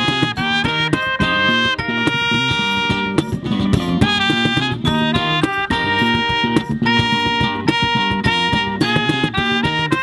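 A small acoustic band playing an instrumental passage: trumpet playing held melody notes over strummed acoustic guitar and bass guitar, with hand percussion keeping the beat.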